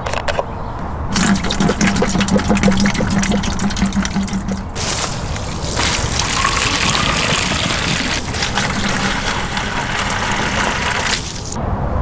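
Liquid pouring into containers in two stretches: a pour of about three and a half seconds, then a garden hose running water into a plastic jug for about six seconds, splashing as it fills.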